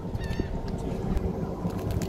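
Low rumbling open-water noise around a small boat, with a faint high, wavering bird-like call about a third of a second in and a few light clicks later on.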